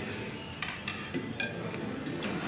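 Utensils clinking lightly against plates and tableware, a few short clinks with a brief ringing tone over a low room background.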